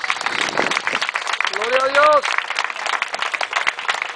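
Audience clapping after a dance performance ends, with one voice calling out in a rising and falling tone about one and a half seconds in.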